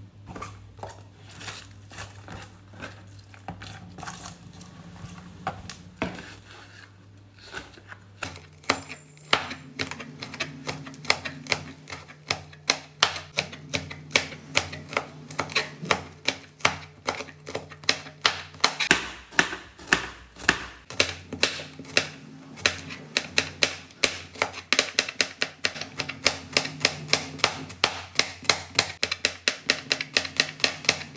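A chef's knife chopping on a plastic cutting board, slicing red chillies and then garlic cloves: an even run of sharp knocks, about three to four a second, starting about eight seconds in and getting denser near the end. Before that there is softer rustling of cabbage leaves being torn by hand.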